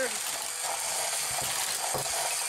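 Steady whirring hiss of a motorized Hot Wheels Power Tower toy track running, with a few light knocks a bit over a second in and near the end.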